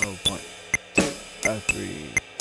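Jazz drum kit playing a swing groove: a ride cymbal pattern with hi-hat, and single eighth-note comping hits on the snare drum, in an uneven swung rhythm of sharp strikes several times a second.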